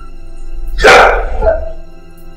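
A single short, loud, harsh cry about a second in, over a steady drone of background music.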